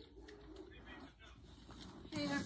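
Near silence: quiet room tone, with a faint low sound in the first second.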